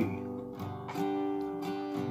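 Acoustic guitar strummed on a full G chord, with the third fret fretted on the B and high E strings. Several strums, each left ringing.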